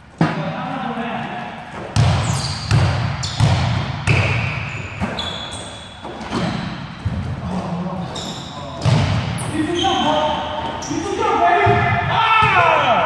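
Basketball bouncing on an indoor court floor: several sharp thuds, each echoing in the large gym hall, with players' voices calling out, most clearly near the end.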